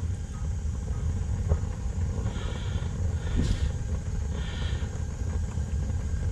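Propane gas-log fireplace burner running just after lighting: a steady low rumble of the gas flames, with two brief faint hisses about two and four and a half seconds in.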